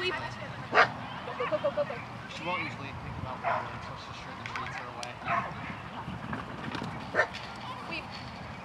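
A dog barking in short single barks, about four spaced a second or two apart.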